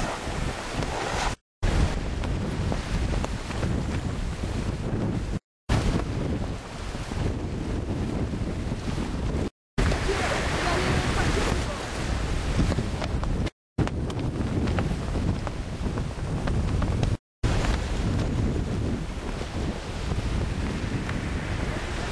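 Wind buffeting the microphone over choppy sea, with waves washing and splashing, a steady rushing noise with heavy low rumble. It is broken by brief total dropouts to silence about every four seconds.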